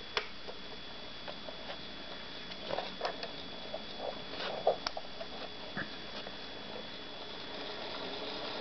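Faint, irregular light clicks and ticks over a steady low hiss and thin high whine. They come as an electric motor is fed a low voltage from a bench power supply and begins to turn very slowly. There is a sharp click just after the start, and a scatter of softer ticks through the middle.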